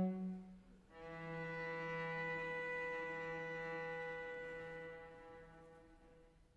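Cello holding one long bowed note that comes in about a second in, after the previous sound dies away, stays steady, and fades out near the end.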